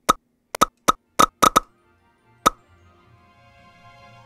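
A quick run of short pop sound effects, about seven of them irregularly spaced in the first two and a half seconds, as on-screen comment boxes appear one after another. Background music then fades in and grows louder toward the end.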